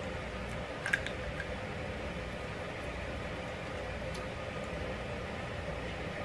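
Quiet room tone with a faint steady hum, and a small click about a second in.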